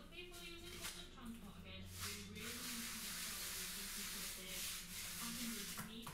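Plastic devilling float, a screw tip just proud of its face, rubbing up fresh sand and cement render: a steady scratchy rasp from about two seconds in. The float compresses the render and scratches a key into it ready for a skim coat.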